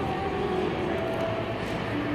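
Steady shopping-mall background noise, a general hubbub with a few faint held tones.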